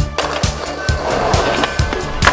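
Skateboard trucks grinding along a ledge, a continuous scrape, over a music soundtrack with a steady drum beat.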